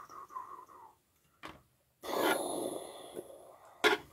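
Mouth sound effects made through pursed lips: a breathy whistle that falls in pitch over the first second, then a longer hissing rush from about two seconds in. There is a short click in between and a sharper click just before the end.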